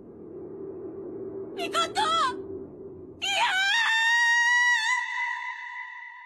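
A rooster crowing: a few short rising notes, then one long drawn-out note that holds its pitch and fades, over a low steady hum that dies away partway through.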